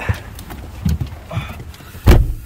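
A person climbing into a car's leather driver's seat: a few soft knocks and rustles spread over two seconds.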